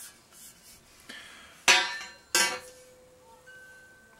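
Two metallic clanks of steel unistrut channel pieces knocking together, about a second and a half and two and a half seconds in, the second leaving a clear ringing tone that hangs on.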